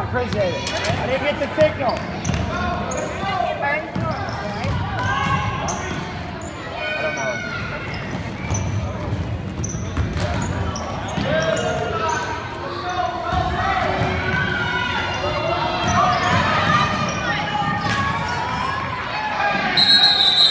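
Live youth basketball in a large gym: a basketball bouncing on the hardwood floor amid many overlapping voices calling out. A referee's whistle starts to blow right at the end.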